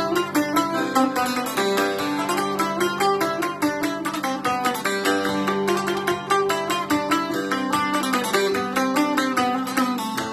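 Small mainland Greek laouto with an ebony bowl, restored and being played with a plectrum: quick runs of plucked notes over a steady low ringing drone.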